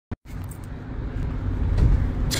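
Low rumble of a car heard from inside the cabin, growing gradually louder, after a single brief click at the very start.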